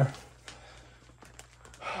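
Faint rustling of the plastic wrap on a king-size mattress as it is held and shifted, with a few light clicks about a second in. A word is spoken at the start and another near the end.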